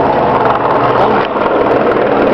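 Busy street noise led by a steady engine hum, with many overlapping voices from a crowd mixed in.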